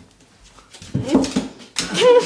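A small dog in a bathtub making a short vocal sound about a second in, followed by a sharp knock near the end.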